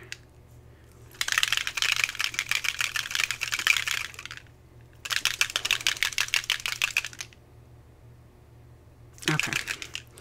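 A small spray-ink bottle shaken hard in two spells of rapid rattling, about three seconds and then about two seconds, with a short pause between, mixing the ink before misting.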